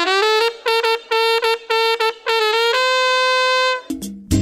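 A solo trumpet playing a fanfare: a run of short, detached notes, mostly on one pitch after a scoop up into the first, then one long held note that cuts off just before the end.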